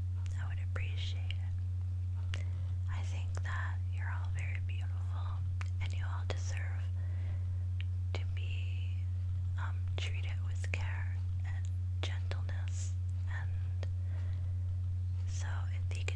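A woman whispering soft, breathy words close to the microphone, with a steady low hum underneath.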